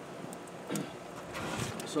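Faint crackling of a wood fire burning in an open-doored homemade steel stove, with a few soft clicks over a low hiss and a brief rustle near the end.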